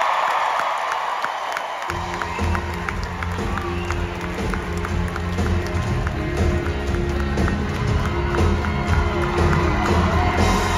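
Audience applause dying down, then about two seconds in a live band starts playing on stage. The band has drums, bass, guitars and piano, with a steady beat.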